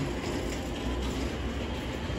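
Steady low rumble and hiss of store background noise, with no distinct events.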